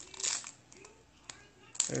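Foil trading-card pack wrapper being torn open and crinkled by hand, faint and sparse, with one sharp click a little past halfway.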